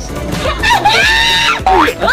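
Background music under high-pitched squealing laughter that rises and falls about halfway through, followed by a quick rising whoop near the end.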